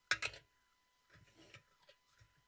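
Two sharp clicks close together near the start, then a few softer knocks and scrapes about a second later.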